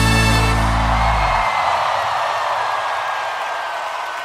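A live band's final chord ringing out over a held bass note, fading away about a second and a half in, leaving crowd noise from the audience.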